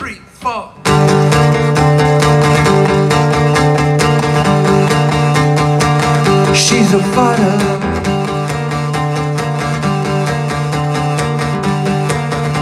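Acoustic guitar: a few single plucked notes, then about a second in steady strummed chords start and carry on as the introduction of a song.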